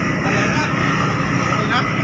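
OceanJet 5 fast ferry's engines running alongside the pier: a loud, steady, even drone.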